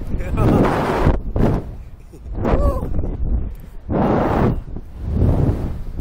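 Rushing wind buffeting the microphone on a Slingshot reverse-bungee ride capsule as it swings and bounces, coming in repeated loud surges about a second apart.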